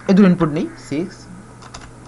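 A few keystrokes on a computer keyboard, short separate clicks in the second half, typing input into a running console program.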